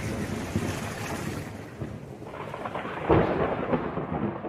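Thunderstorm sound effect: steady rain hiss with rolling thunder, and a fresh rumble of thunder about three seconds in.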